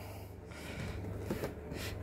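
Faint handling of a clear plastic propagator lid being fitted onto a plastic seed tray, with a couple of light clicks near the end.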